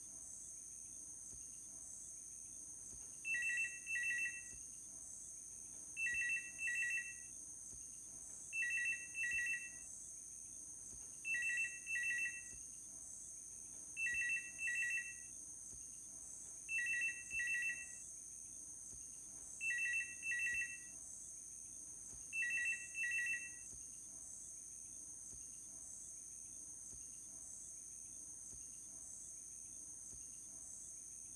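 A telephone ringing in double rings, eight times about every three seconds, then falling silent a few seconds before the end. Under it runs a steady high chirring of crickets.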